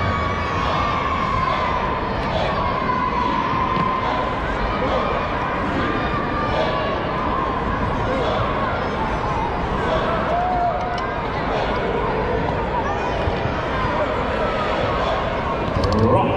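Large indoor arena crowd talking all at once: a steady hubbub of many overlapping voices.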